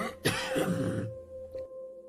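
A person coughing and clearing their throat over a steady, held music note; the coughing dies away about halfway through, leaving the note on its own.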